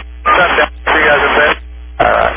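A voice over an aviation VHF radio channel, thin and narrow-band, speaking two short phrases that the recogniser could not make out, over a steady low hum.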